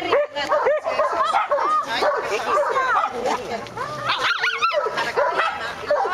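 A dog making repeated short, high-pitched whining cries that rise and fall, with a few sharper yelps about four seconds in. People's voices are mixed in.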